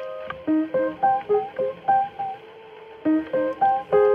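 Music: a plucked guitar playing a run of single notes, each fading quickly, with a short pause a little past halfway through.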